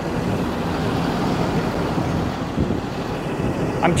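A motorhome's engine running steadily at idle: a constant low rumble.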